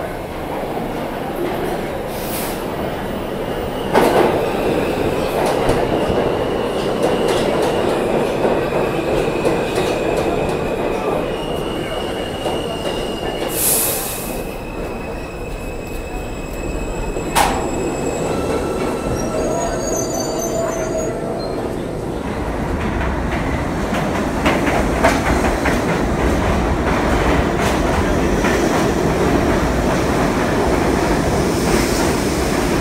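New York City Subway trains running through underground stations: a steady rumble of wheels on rail with high-pitched wheel squeal in the first half and a few sharp clicks.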